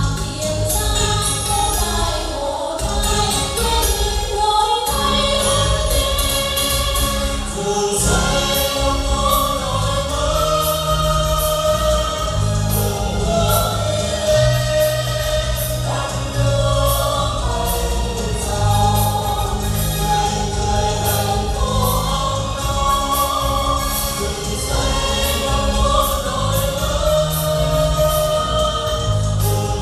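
A mixed chorus of men and women singing a Vietnamese song into microphones over amplified accompaniment with a steady bass and beat.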